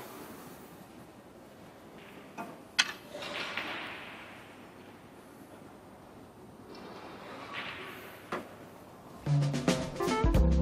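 Quiet arena room tone with a single sharp click about three seconds in, then broadcast music with bass and drums starting abruptly near the end.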